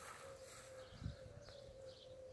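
Quiet outdoor background with a faint, steady single-pitched whine held throughout, and a soft low thump about a second in.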